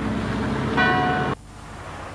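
A car horn sounds once, a short flat toot about three quarters of a second in, over the steady running of a car engine. The sound cuts off suddenly just after, leaving quieter street noise.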